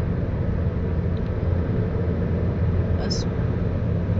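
Steady low rumble of road and engine noise inside a car's cabin while it cruises at highway speed.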